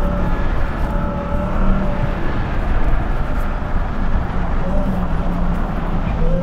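Ram TRX pickup driving hard across a dirt course: its supercharged 6.2-litre Hemi V8 running under load, with a steady rush of tyre, dirt and wind noise.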